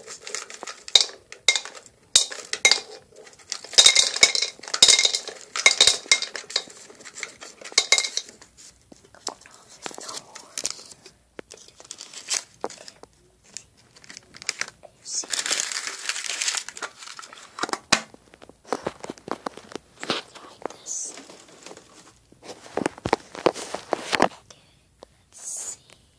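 Small hard Altoids mints clicking and rattling as they drop one by one into a toy gumball machine's plastic globe, with a denser clatter a few seconds in. Paper crinkles and the metal mint tin is handled, with a longer rustle around the middle.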